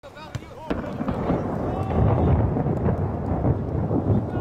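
Loud, steady rumbling noise from wind buffeting the camera microphone, starting about a second in, with voices shouting briefly at the start.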